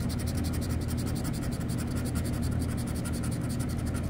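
Scratch-off lottery ticket's coating being scraped off with a hand-held scratcher in rapid, steady back-and-forth strokes, many a second.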